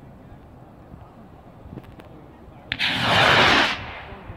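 Hand-made skyrocket launching: a sharp pop about three seconds in, then a loud rushing hiss for about a second as it lifts off, cutting off suddenly.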